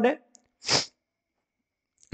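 A man with a cold gives a brief, stifled sneeze: one short hissy burst about two thirds of a second in.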